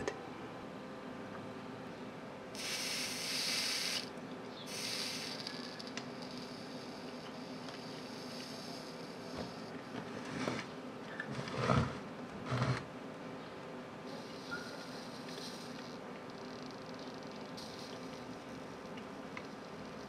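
Soldering iron sizzling on a small brass part: two short hissing sizzles a few seconds in, with fainter hissing later. There are two light knocks near the middle, over a faint steady hum.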